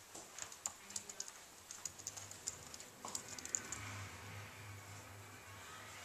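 Typing on a computer keyboard: a run of light, irregular key clicks through the first three and a half seconds, then the clicking stops.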